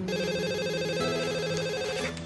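Electronic telephone ringing: a fast warbling trill held for about two seconds, a call coming in that is answered moments later.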